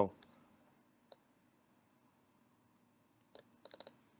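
Faint computer mouse clicks: a single click about a second in, then a quick run of about five clicks near the end.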